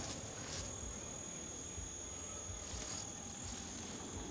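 Insects trilling in one steady, high-pitched note.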